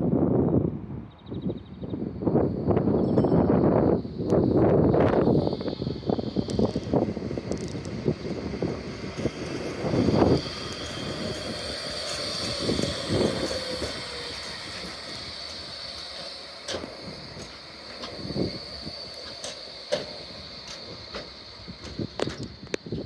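Electric light-rail tram passing close by, with its wheels running on the rails and a steady high electric whine that slowly fades. Heavy, uneven low rumbling in the first few seconds.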